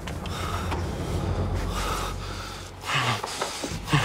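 A man's sharp, noisy gasping breaths, several in a row with a cluster near the end, as he is grabbed and held from behind, over a low steady rumble.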